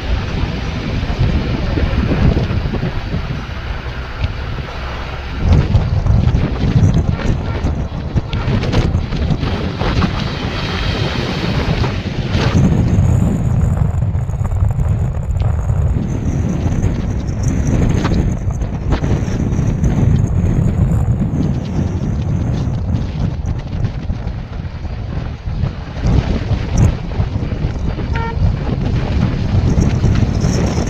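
Wind rushing over the microphone and low road and engine rumble from a moving car, steady, with a rise in loudness about five seconds in.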